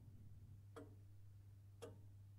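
Near silence with a clock ticking faintly, one tick about every second, over a low steady hum.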